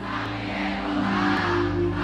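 Live pagode band music with long held low notes, under the noise of a large crowd cheering and singing along.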